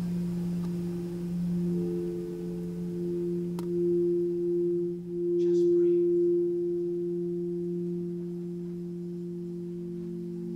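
Frosted quartz crystal singing bowls ringing together in several steady, overlapping tones. A higher tone joins about two seconds in, there is a brief click a little past the middle, and one tone swells loudest about halfway through before the sound settles.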